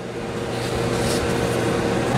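Steady rush of air from the end of a coal forge's chimney pipe, driven by an inline suction fan, with a low steady motor hum under it; it grows gradually louder.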